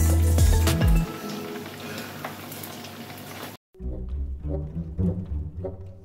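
Chicken pieces sizzling as they fry in oil in a non-stick pan while being turned with a fork. About three and a half seconds in the sound cuts off suddenly and background music with a repeating low plucked bass line takes over.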